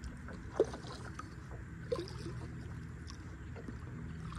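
Water dripping and lapping around a kayak on calm water, with a sharp plop about half a second in and a smaller one near two seconds.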